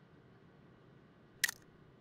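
A camera shutter firing once: a single short, sharp click about one and a half seconds in, over faint room tone.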